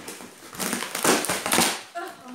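Packing tape and cardboard being torn from a shipping box: a run of rough tearing noises starting about half a second in, loudest in the second half.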